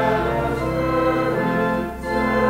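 Church organ playing a hymn in sustained chords, with voices singing along; the chords change about every second.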